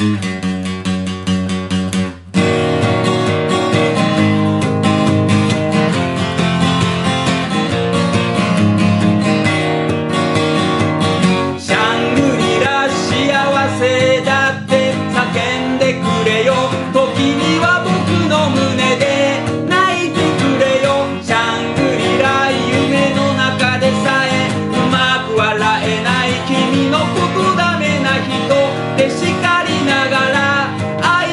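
K.Yairi YW-1000 steel-string acoustic guitar strummed in chords, with a brief break about two seconds in. From about twelve seconds in, a man sings over the guitar.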